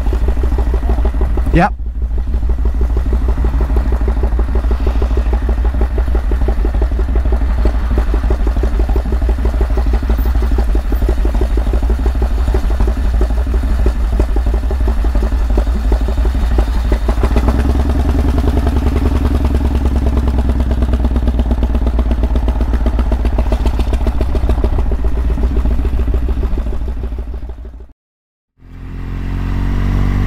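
The Flying Millyard's 5000cc V-twin, built from Pratt & Whitney Wasp radial cylinders, running at low revs under way, heard from on the bike as a steady fast beat of firing pulses with a deep throb beneath. The tone changes about halfway through, and the sound cuts out briefly near the end.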